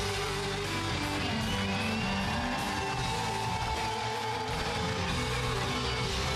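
A live band playing an instrumental passage of an Austropop song, with an electric guitar carrying the melody in sustained, bending notes.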